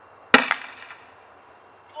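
S-Thunder 40mm gas-powered airsoft grenade shell fired from a grenade launcher: one sharp, loud bang launching a foam ball, with a second, fainter crack a fraction of a second later.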